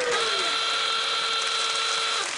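A steady electronic buzzer tone, held for about two seconds with no change in pitch: a quiz-show buzzer sounding for a wrong answer. Studio audience laughter runs underneath.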